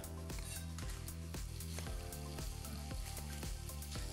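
Sliced country sausage sizzling in a pan as it crisps and gives up its fat, with a few sharp knife taps on a wooden cutting board as bell peppers are cut. Background music with a steady bass runs underneath.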